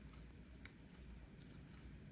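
Near silence: faint room tone with a low hum and one short, faint click about two-thirds of a second in.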